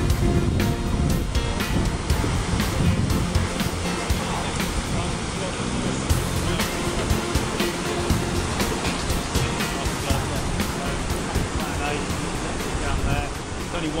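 Loud, steady rush of whitewater churning through an artificial whitewater course, with wind buffeting the microphone.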